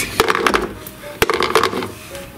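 Foil-wrapped chocolate eggs being set down on the floor of a plastic toy oven: a few light clatters and knocks, the sharpest a little past one second in.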